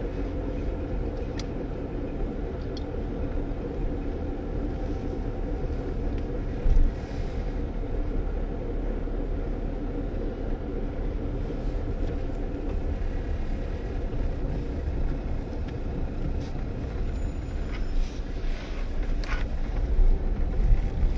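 A car driving, heard from inside the cabin: a steady low rumble of engine and tyre noise, with one brief thump about seven seconds in.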